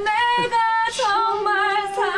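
A man singing solo into a microphone in a high voice, holding long notes that waver with heavy vibrato and slide from one pitch to the next.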